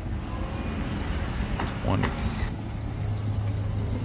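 City street traffic noise: a steady low hum of vehicle engines with a hiss of road noise, a short sharper hiss about two seconds in, and faint passing voices.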